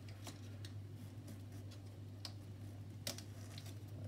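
Faint, scattered clicks and rustles of a nylon strap and plastic clip being handled as a sibling-board adapter is fastened around a stroller frame bar, the sharpest click about three seconds in, over a steady low hum.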